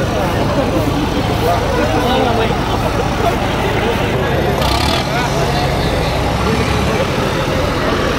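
John Deere tractor's diesel engine running steadily at low speed under loud crowd chatter, with a brief hiss about halfway through.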